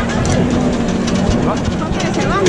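Converted Renault 4 street-theatre vehicle on the move, a steady low rumble and hum, with crowd voices and scattered clicks around it.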